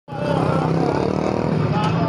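A steady low engine hum, with people's voices talking over it.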